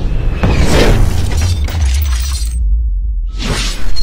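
Cinematic intro sound design over music: a deep, steady bass rumble under swelling whooshes and crashing impact hits. Near the end the high end cuts out for under a second, then a rising whoosh builds into a loud hit.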